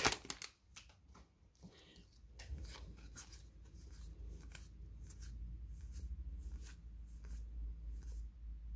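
Magic: The Gathering cards handled and flipped through one by one, making faint, irregular flicks and slides of card stock, with the foil booster wrapper rustling at the start.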